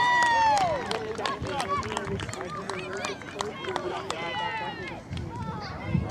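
Several children's and adults' voices calling out and talking over one another. The first second is the loudest, with one long call that falls in pitch.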